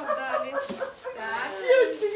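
High-pitched women's voices talking over one another, with a squealing rise in pitch near the end.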